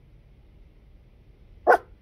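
A dog gives a single short bark near the end.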